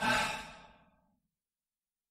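A person's sigh: one breathy exhale that comes in suddenly and fades out within about a second.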